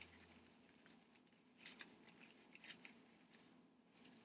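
Faint, soft rustling and crinkling of thin paper napkin layers being peeled apart by hand, with a few small crackles in the middle and near the end.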